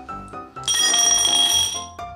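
Background music with a bright, bell-like ringing effect laid over it. The ringing starts under a second in, holds steady for about a second, then stops.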